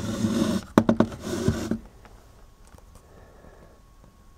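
Handling noise: scraping and a couple of sharp knocks as the open metal instrument case is turned round on a table and the camera is moved. It stops a little under two seconds in, leaving quiet room tone.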